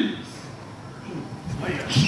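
A person's voice briefly at the start and again near the end, with a quieter stretch between.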